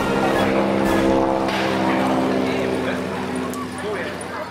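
North American T-6's nine-cylinder Pratt & Whitney R-1340 radial engine droning steadily in flight overhead, fading out over the last second or so.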